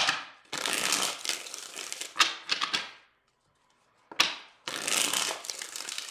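A deck of tarot cards being riffle-shuffled by hand and bridged, a rapid fluttering of cards falling together. The pattern is a short burst, then a riffle of about two and a half seconds, a second of quiet, and another riffle from about four seconds in.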